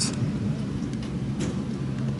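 Steady low rumble with a faint hiss above it: outdoor background noise with no distinct event.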